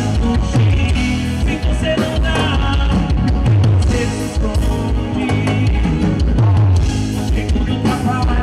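Live forró band playing on stage, with a male lead singer singing into a microphone over the band.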